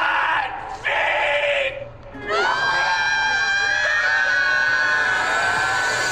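Movie-trailer soundtrack: brief voices, then, about two seconds in, a woman's long, high, steady held cry over music, cutting off suddenly near the end.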